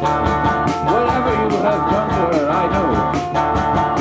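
Live rock band playing: electric guitars, bass guitar and drums, with a steady beat and a bending melodic line from about a second in.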